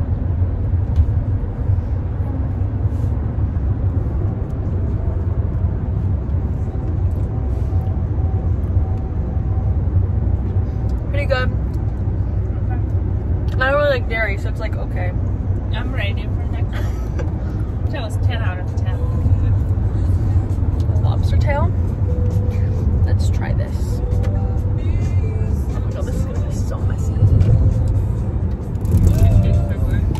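Steady low rumble of a car's engine and tyres heard inside the cabin while it is being driven, with music and snatches of voices over it.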